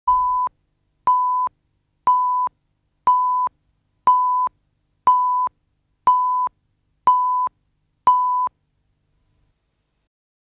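Countdown leader beeps: nine identical short steady tone beeps of one pitch, one each second, marking the numbers of a countdown before a programme segment.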